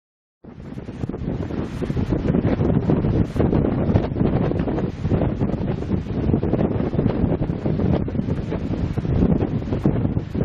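Wind buffeting the camera microphone outdoors by a snowy sled track, a dense rumbling noise that starts abruptly about half a second in and runs on unevenly.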